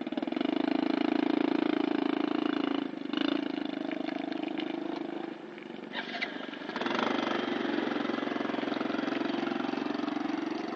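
Small underbone motorcycle's engine running and revving under load as the bike is worked through deep mud. The revs ease off about three seconds in, sag lower past the middle, and pick up again about seven seconds in.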